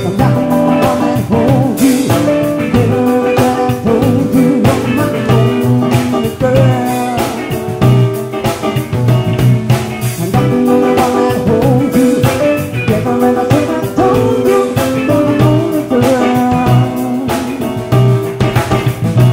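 Live funk band playing a groove: a Music Man StingRay electric bass, keyboard chords, electric guitar and a Pearl Reference drum kit keeping a steady beat, with a woman singing over it.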